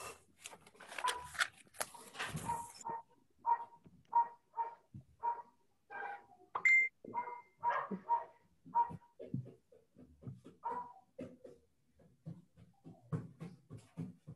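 An animal calling in a string of short, repeated bursts, about two a second, heard over a video-call line. A brief rush of noise comes first.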